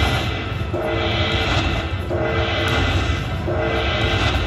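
Aristocrat Dragon Link Panda Magic slot machine's win count-up music: a short tonal jingle repeating about every second and a half while the bonus win total tallies up, over a steady low rumble.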